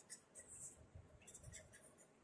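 Faint scratching of a pen writing numbers on a notebook page, in short separate strokes.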